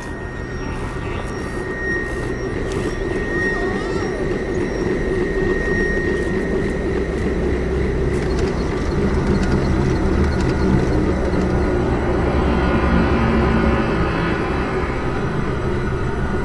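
Film sound design for a giant flying saucer hovering over a city: a deep rumble that swells steadily louder, with a thin high tone held through the first few seconds and low droning tones coming in during the second half.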